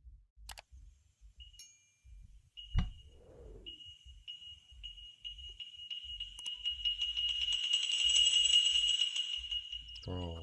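Horror film soundtrack: a sharp hit about three seconds in, then a high, steady ringing tone that swells louder toward the end.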